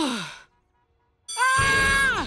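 A cartoon character's voice slides down in pitch in a short sigh-like sound that dies away half a second in. After a moment of silence, a loud, high, held scream starts about 1.3 seconds in.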